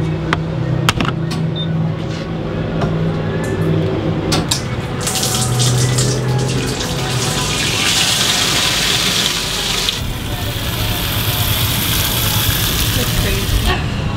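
Fuel pump nozzle pouring E85 into a five-gallon plastic jerry can: a rushing hiss of liquid that starts about five seconds in, grows stronger, and cuts off sharply near the end. Before the pour, a low steady hum with a few clicks.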